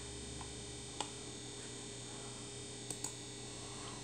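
Low steady electrical hum of room tone, with a few faint clicks: one about a second in and two close together near three seconds.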